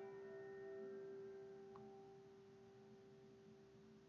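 The last held chord of a slow ballad's backing track ringing out and fading to near silence, one low note lingering after the others die away.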